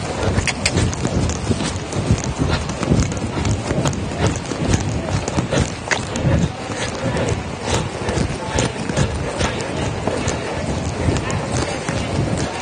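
Hoofbeats of a young mare on the soft dirt footing of an indoor arena, an irregular run of dull strikes, under a continuous rustling noise.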